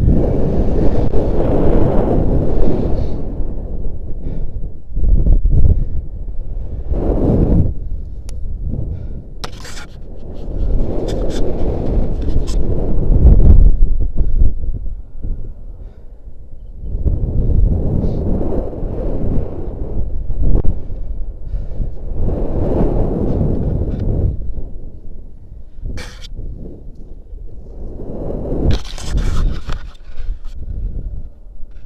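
Wind rushing over an action camera's microphone as a rope jumper swings on the line, swelling and fading in surges about every five seconds with each pass of the swing. A few short sharp clicks stand out between the surges.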